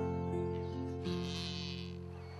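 Acoustic guitar background music, its sustained notes ringing and slowly fading, with a brief high buzzing sound about halfway through.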